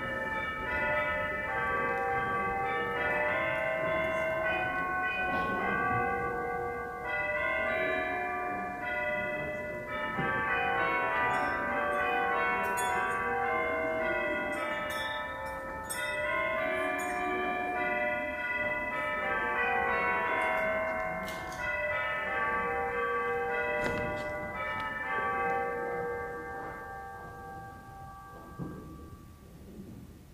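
Tuned bells ringing a slow melody, many notes overlapping and ringing on, fading out near the end.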